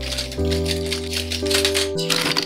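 Background music with held notes, over a dense clatter of metal oil-paint tubes and their clips knocking against each other as hands brush across them.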